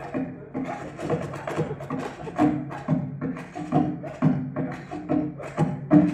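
Newspaper percussion: pages slapped, snapped and rustled in a quick, uneven rhythm, mixed with hollow knocks on a wooden box.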